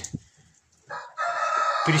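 A rooster crowing: after a second of quiet, a short first note, then one long crow that carries on past the end.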